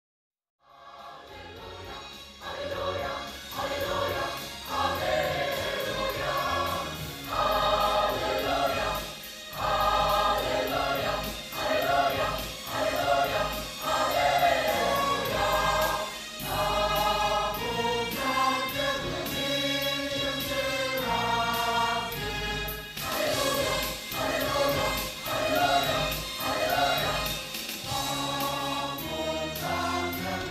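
A mixed choir of men and women singing a gospel song in harmony. The singing starts from silence about half a second in.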